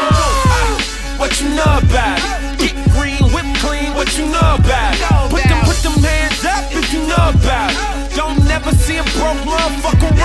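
Hip hop track: a laugh about a second in, then vocals over a beat with deep bass hits that slide down in pitch.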